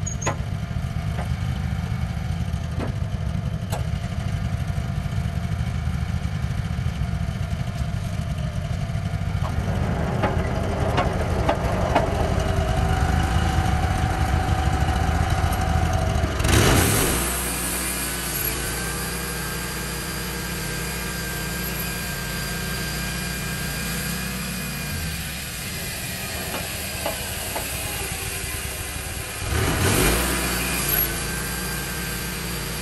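Wood-Mizer LT15 sawmill's gas engine running. About halfway through it surges loudly, then settles into a steadier, higher running note.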